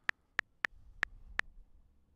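Keyboard clicks from typing on an iPad's on-screen keyboard: about five short, sharp ticks at an uneven typing pace, stopping after about a second and a half.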